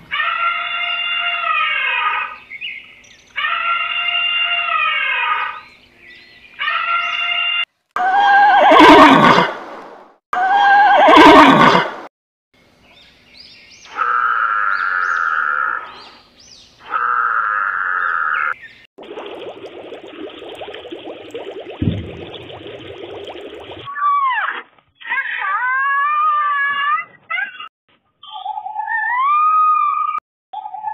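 A series of different animal calls edited one after another. First comes a call repeated three times, then two loud harsh calls about eight and eleven seconds in, then a noisy stretch, and near the end high calls that swoop up and down.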